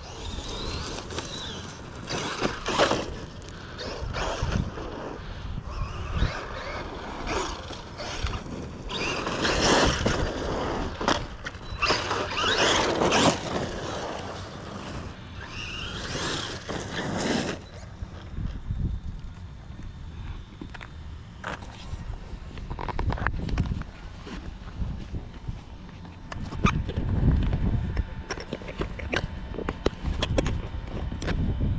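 RC monster truck's electric drivetrain running in repeated bursts of throttle over dirt for the first half. It then goes quieter, with low rumbles and a few sharp clicks.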